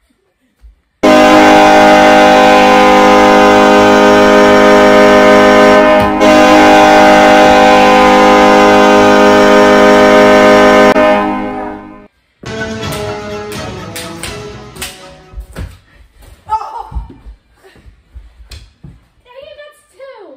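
Hockey goal horn: one loud, steady horn blast lasting about ten seconds, with a brief dip near the middle, signalling a goal. After it fades come scattered clicks and knocks of play and short bits of voice.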